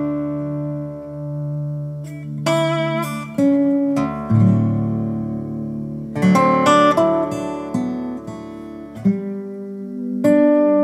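Resonator guitar playing a slow instrumental: plucked notes and chords struck about once a second, ringing out and fading over held low bass notes.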